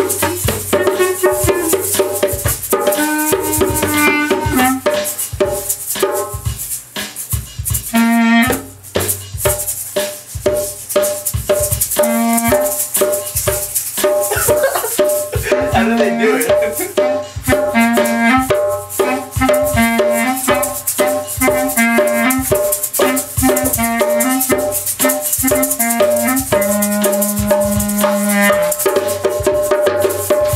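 Live hand percussion jam: a djembe struck by hand and shakers rattling, with a clarinet playing a melody of held notes over a steady repeating beat.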